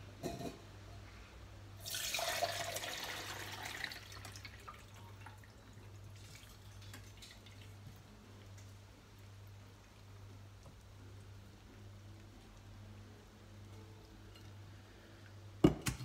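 Garlic-infused water poured from a saucepan through a metal kitchen sieve into a stainless steel jug: a splashing pour for about two seconds, then a faint trickle and drips as the sieve drains. A sharp metallic knock near the end.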